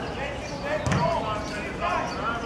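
A football kicked once, a sharp thud about a second in, while players shout short calls to each other on the pitch.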